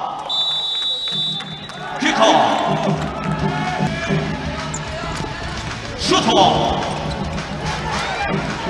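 Live sound of an indoor futsal match. Near the start a referee's whistle sounds steadily for about a second and a half, likely for kick-off. Then the ball is kicked and bounces on the wooden court under commentary and the crowd.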